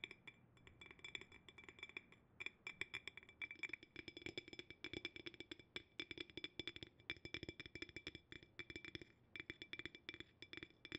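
Fingertips tapping quickly and irregularly on the base of a glass jar with a bamboo lid, each tap leaving the glass ringing faintly at a few fixed pitches. The taps are sparser for the first two seconds, then come thick and fast.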